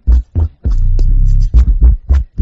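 Hip-hop instrumental beat: deep bass notes under sharp drum hits, broken by short gaps where the beat cuts out.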